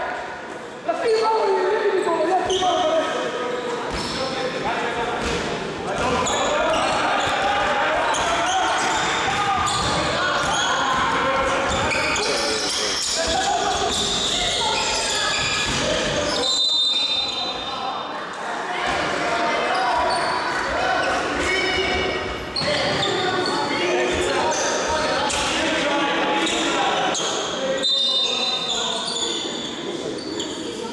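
Basketball being dribbled and bouncing on a wooden gym floor, with players', coaches' and spectators' voices echoing in a large sports hall. Two short high whistle blasts, about halfway through and near the end.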